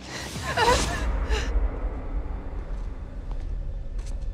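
Dramatic sound effects: a rushing whoosh with a short strained gasp at the start, then a deep, steady low rumble underneath.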